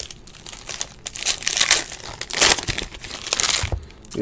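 Crinkling and rustling as trading cards and foil card-pack wrappers are handled, in several irregular bursts.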